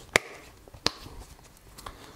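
Two sharp clicks, about two-thirds of a second apart, then a fainter one near the end, as a Surface Go tablet is pressed back into a Kensington BlackBelt rugged case with hard plastic edges.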